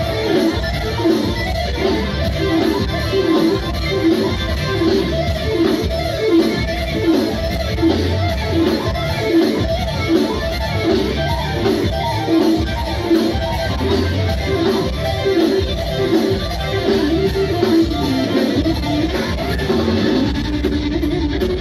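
Progressive metal band playing live in an instrumental passage: a fast, repeating distorted electric guitar line through ENGL amplifier stacks over bass guitar and drums. The recording is overloaded by the very loud venue sound, so the audio is distorted.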